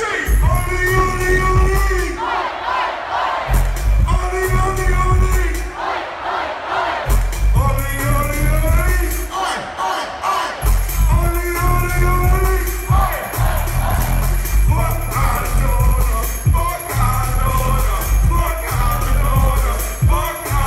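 Loud dance track played through a festival PA, its heavy bass cutting out for a second or so every few seconds, with a crowd shouting and singing along.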